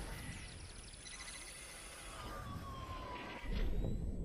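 Electronic transition sound effects for an animated logo card: noisy whooshes with gliding, siren-like tones, including a falling tone about halfway through and a swell shortly before the end.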